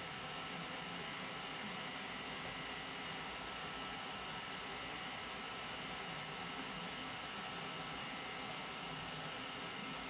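Raise3D N2 Plus 3D printer's fans running steadily, an even hiss with a few faint steady high tones, while the left nozzle preheats before the print starts. No knocks are heard.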